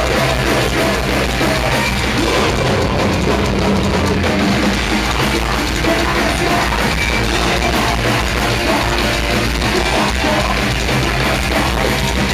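Metalcore band playing live: distorted electric guitars and drum kit at a loud, steady level, filling the whole range without a break.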